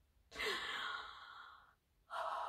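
A woman's long, breathy sigh that starts a moment in, strongest at first, and fades away over about a second and a half: she is catching her breath after being overwhelmed.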